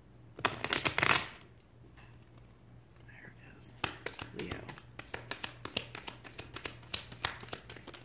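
A deck of oracle cards being shuffled by hand. The two halves are riffled together in one quick, loud flurry of clicks near the start, then several seconds of overhand shuffling give light card slaps, about three or four a second.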